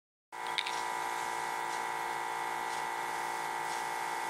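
Steady electrical hum made of several fixed tones, the strongest high and thin near 1 kHz, with a faint tick about half a second in.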